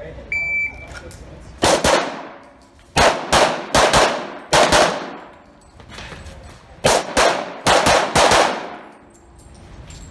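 A shot timer's short electronic beep, then rapid pistol fire in three strings of quick shots, each shot ringing with a long echo off the walls of an indoor range.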